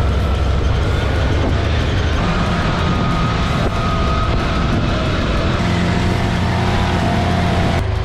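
Open side-by-side utility vehicle driving along a dirt trail: a steady engine rumble under a broad rush of wind and driving noise, with a faint steady whine on top. It starts abruptly and stays loud and even throughout.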